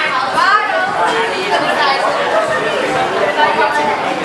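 Audience chattering in a hall: many voices overlapping, no one voice standing out.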